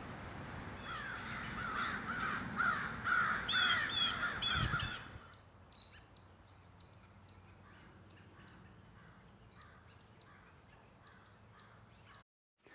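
Outdoor bird calls: a run of harsh, repeated calls for the first few seconds, cutting off about five seconds in to a quieter stretch of sparse, short, high chirps.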